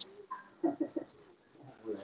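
Faint low cooing of a bird: a quick run of three short coos a little after half a second in, and another near the end, with a few faint high chirps.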